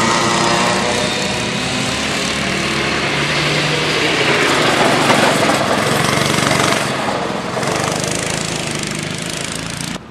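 Honda cadet kart's small single-cylinder four-stroke engine running at speed on the track. It grows louder toward the middle as the kart comes close, then fades as it moves away.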